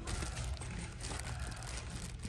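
Soft crinkling of clear plastic bags as bagged toys are handled, over a steady low hum.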